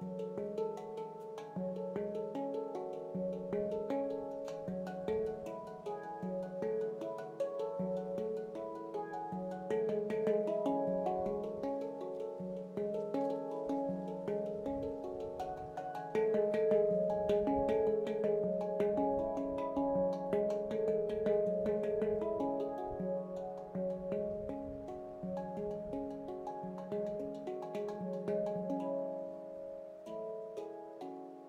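Veritas Sound Sculptures stainless-steel handpan, an 18-note F# pygmy, played by hand: a steady stream of struck notes ringing on over one another, low notes under higher ones. It gets louder a little past halfway.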